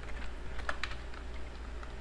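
Computer keyboard keys clicking in a few irregular, scattered keystrokes as code is typed, over a steady low hum.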